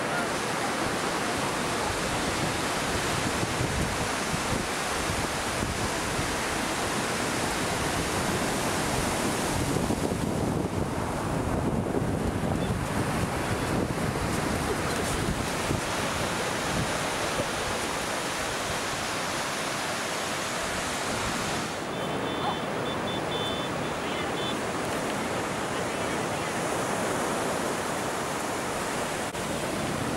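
Ocean surf breaking and washing up a sandy beach: a steady rush of waves, with wind on the microphone.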